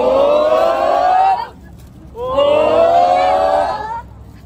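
Group of children's voices holding a rising 'ooooh' together, twice, each call about a second and a half long with a short break between, building up to a cheer.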